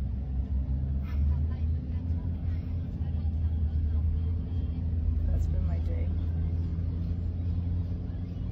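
Steady low rumble of a car's engine and tyres heard from inside the cabin while riding.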